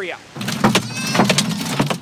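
Golf-ball-sized hail pounding on a car's roof and glass, heard from inside the car: a loud, dense run of hard hits that starts about a third of a second in and keeps on.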